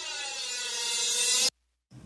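Cymbal swell run through a Waves MetaFlanger: a whooshing, sweeping flanged wash that grows steadily louder, then cuts off suddenly about one and a half seconds in. It is the swell that leads into where the heavy guitars start.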